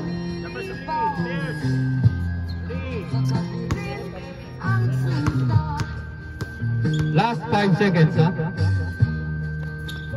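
Music playing with a steady bass line that steps from note to note, and voices over it.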